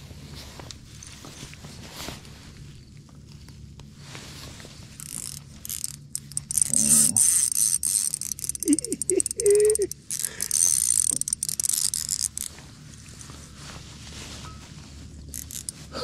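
Spinning reel working against a hooked fish on a bent rod, its high-pitched mechanical sound coming in several bursts from about five seconds in until about twelve seconds in.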